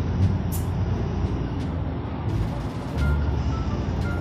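Cabin noise of a moving city bus: a steady low engine and road rumble with occasional rattles, and a few faint short beeps in the second half.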